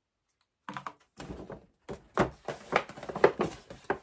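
Paper and cardboard packaging being handled: a quick run of crinkles, taps and clicks starting about a second in.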